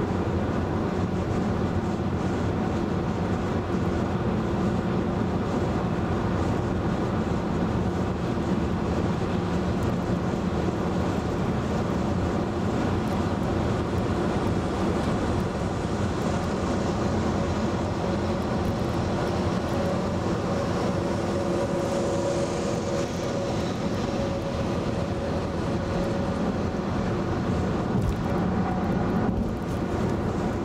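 Steady tyre and road noise with engine drone inside the cabin of a 2011 VW Tiguan cruising at highway speed. A faint steady hum joins it through the middle as the car runs alongside a flatbed tractor-trailer.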